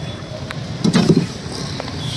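Fish handled on a wooden chopping block, a few sharp knocks as the fish is shifted, over a steady low rumble of market background, with a louder low thud-like sound about a second in.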